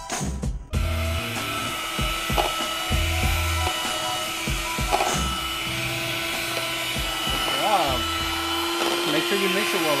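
White electric hand mixer running steadily, its beaters whipping cake batter in a plastic bowl, a constant motor hum and whine that starts about a second in. Background music with a beat plays underneath.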